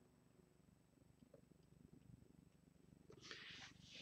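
Near silence: room tone with a faint low hum, and a faint short hiss near the end.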